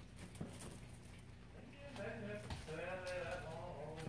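Guinea pig calling: a wavering, bleat-like pitched call from about two seconds in until near the end, after a few faint clicks and rustles in the hay and wood shavings.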